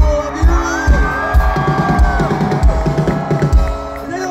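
Live pop-punk band playing over the concert PA. A kick drum beats about twice a second under long held notes.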